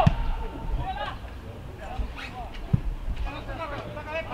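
Footballers calling out to each other on an open pitch during play near the goal, with a few dull thuds of the ball being kicked, one standing out about three quarters of the way through.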